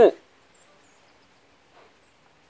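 The end of a spoken word, then near silence: faint outdoor background with a few faint high chirps. The burning sodium in the flask makes no sound that can be heard.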